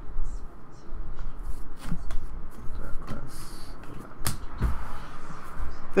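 Handling noise from a stack of trading cards being shuffled and moved in the hands: scattered soft clicks, rustles and low bumps, with one sharper knock about four seconds in.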